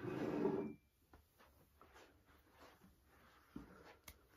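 A ceramic mug slid across a wooden sideboard top: a brief scrape lasting under a second at the start, followed by faint rustles and small knocks.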